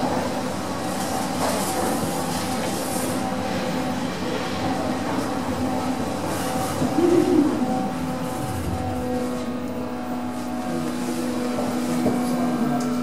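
Traction lift car travelling through its shaft at full speed, heard from on top of the car: a steady mechanical rumble and rattle with a running motor hum. A louder clatter comes about seven seconds in, and the hum grows stronger near the end.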